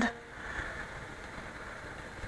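Faint steady rolling noise of a pellet mill die turning as it is spun by hand, with the rolls not touching it.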